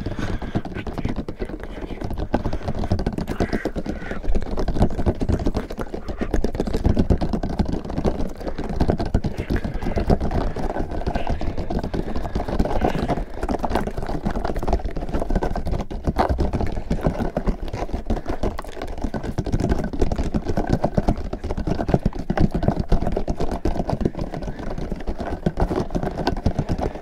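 A pink ridged plastic ring toy handled close to the microphones: squeezed, twisted and tapped by fingers, making a dense run of quick crackly clicks and taps.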